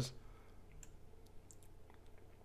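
A few faint computer mouse clicks, spaced unevenly.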